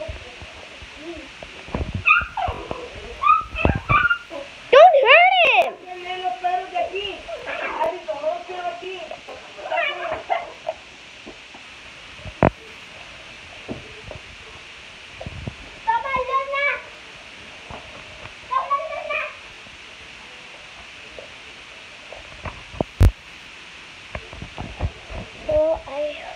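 Loud, high-pitched vocal outbursts in several short bursts, loudest about five seconds in, with two sharp clicks later on.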